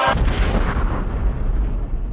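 The outro rap track cuts off just after the start, leaving a deep rumbling explosion-like boom that slowly dies away, its highs fading first.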